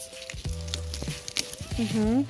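Crackling and clicking of dry vine and leaves as a hand twists and pulls at a winter squash's dried, hardened stem to break it from the vine, with soft music underneath. A short voiced sound comes near the end.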